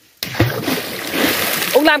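A clod of earth thrown into a pond hits the water with a sudden loud splash about a quarter second in, and the splashing goes on for over a second.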